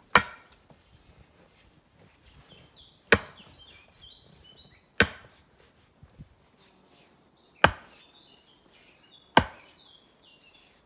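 A sledgehammer driving a wooden stake into the ground: five sharp strikes, roughly two to three seconds apart. Birds chirp faintly between the blows.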